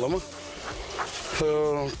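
A man's voice trails off, then about a second of quieter, rustling noise follows. About a second and a half in comes a short, held, pitched vocal sound.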